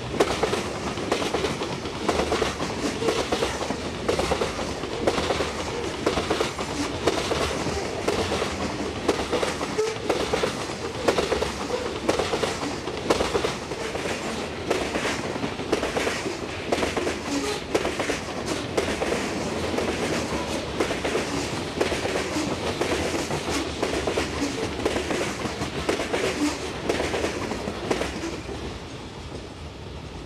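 Freight train of covered hopper cars rolling past at close range: a steady rumble with wheels clicking over the rail joints in a quick, uneven rhythm. The sound drops away near the end as the last car passes and moves off.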